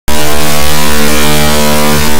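A very loud, harsh electrical buzz: a steady hum with many overtones under a hiss. It cuts in abruptly right after a dead dropout in the audio and stops just as suddenly about three seconds later, a glitch in the sound system or recording rather than anything in the room.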